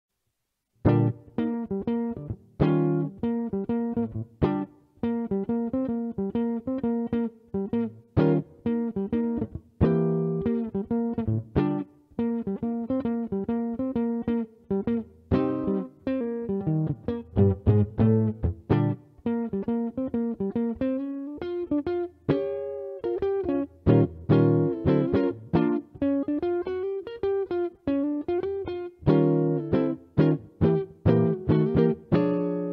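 2004 Epiphone Emperor Regent hollow-body archtop electric guitar with its original suspended mini-humbucker pickup, flatwound strings picked in a run of single notes and chords from about a second in. It plays clean, straight through a Digitech RP2000 preset with no amp emulation, only warm equalization, with the guitar's tone and volume full open.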